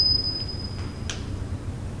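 Room noise with a steady low hum, and a faint steady high-pitched whine that fades out about a second in.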